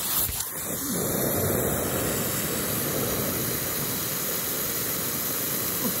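Aerosol insecticide can spraying in one long, steady hiss.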